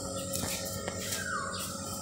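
Quiet outdoor garden ambience with a single short, falling bird call a little over a second in.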